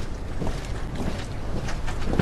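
A marching honor guard's boots striking wet pavement in unison, in a regular beat of about two steps a second, over a steady rushing noise of wind and rain on the microphones.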